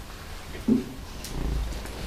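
A pause in a man's speech: room hum with one brief low vocal sound about a second in, and a low rumble on the microphone near the middle.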